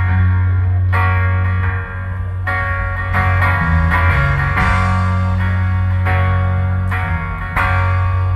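Live band playing an instrumental intro: a Fender Telecaster electric guitar over a drum kit and a strummed acoustic guitar, with a steady heavy low end.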